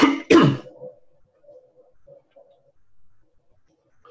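A man coughing twice in quick succession into his fist, two short loud coughs right at the start.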